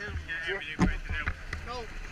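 Mostly a person talking, over a low rumble of wind buffeting the microphone, with one sharp knock a little under a second in.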